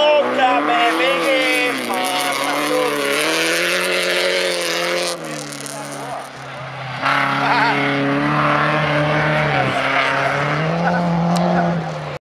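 Folkrace cars racing on a gravel track, their engines revving up and down through the corners. The sound dips about five seconds in and comes back loud about two seconds later.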